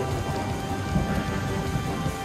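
Steady rain in the forest, with a heavy low rumble throughout, under background music holding sustained notes.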